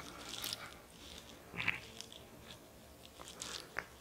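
Faint, scattered clicks and rustling of metal knitting needles and yarn being handled, a few small ticks spread irregularly through the stretch.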